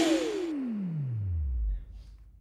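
A synthesizer's falling pitch sweep closes out a song: one long downward glide into a deep low tone, with a noise wash fading out under it. It cuts off abruptly near the end.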